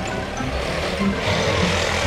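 A motor scooter's engine coming closer and growing louder from about a second in, over background music.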